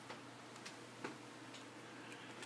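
A few faint, irregular clicks of a stiff card inner sole and felt being handled and fitted into a small doll shoe.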